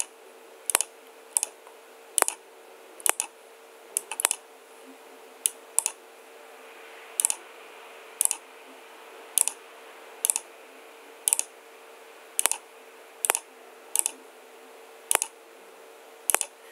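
Computer mouse clicking: a steady run of sharp clicks, about two every second, over a faint steady hum.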